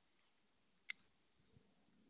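Near silence, broken by one short, sharp click about a second in.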